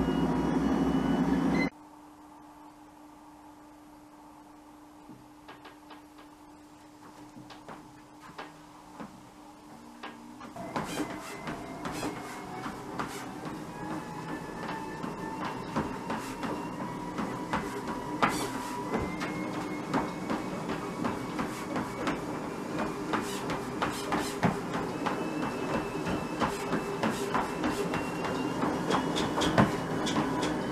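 A home electric treadmill speeding up: its motor whine climbs slowly in pitch, with footfalls striking the moving belt in a steady rhythm from about ten seconds in. Before that it is quiet apart from a low steady hum, after a louder noise cuts off suddenly near the start.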